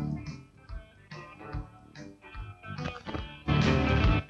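Rock and roll band recording in an instrumental stretch: a quieter passage of picked electric guitar notes, then the full band comes back in loudly about three and a half seconds in.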